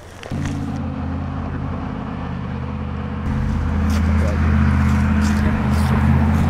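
A car engine running steadily. It starts abruptly under a second in and gets louder about three seconds in.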